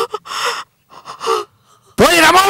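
A woman gasping in shock and distress: a few short breathy bursts in the first second and a half.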